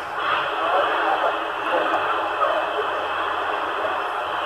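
A CRT 7900 CB transceiver receiving on AM, 27.125 MHz (CB channel 14), gives out a thin, hissy band of static with weak, distant stations talking faintly underneath. The hiss steps up just after the start and then holds steady: far-off stations coming in on propagation, too distant to copy but rising.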